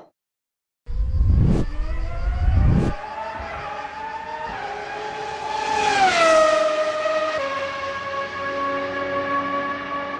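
Race car engine sound effect: revving with tyre noise for the first two seconds, then a loud pass-by whose pitch falls about six seconds in, settling to a steadier engine note.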